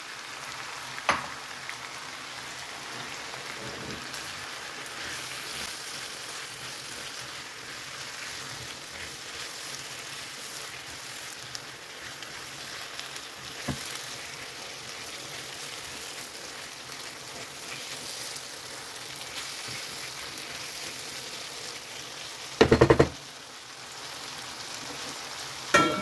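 Diced potatoes, onion and freshly added chopped tomato frying in oil in a shallow pan, a steady sizzle, with a spatula stirring and giving a few light taps. A loud knock comes a few seconds before the end.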